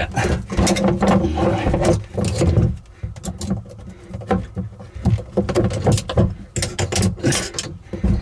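Pliers gripping and bending a cut PEX cinch clamp to work it off a fitting: scattered metal clicks and scrapes, coming close together in the last second or two.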